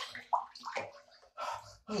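Water sloshing in a bathtub in a few short bursts with quiet gaps between them.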